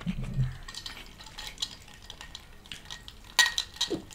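Close-miked mukbang eating sounds: fingers mixing and squishing rice on a plastic plate, with scattered small clicks of dishes. Near the end comes a louder short clink and rattle of a glass being picked up.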